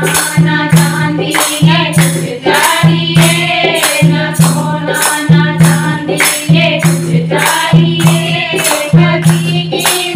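A group of women singing a Hindi devotional kirtan (bhajan) together. They clap their hands in a steady beat, about three claps a second.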